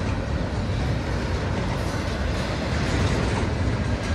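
Double-stack intermodal well cars rolling past close by, a steady low noise of steel wheels on the rails with no break or distinct clicks.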